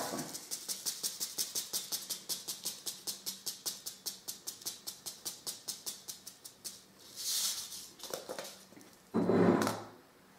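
A paper packet of cress seeds being shaken and tapped to scatter seeds onto damp cotton pads: a rapid, even ticking, about six a second, that stops about seven seconds in. Then a few short rustles of the paper packet, the loudest near the end as it is set down on the table.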